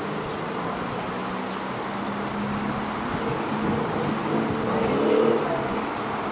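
Steady outdoor street noise with road traffic, swelling a little about five seconds in, with faint distant voices.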